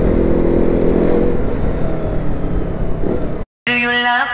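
KTM Duke 200's single-cylinder engine running under way on the road, with a steady engine note over wind and road noise. It cuts off abruptly near the end, and music starts in its place.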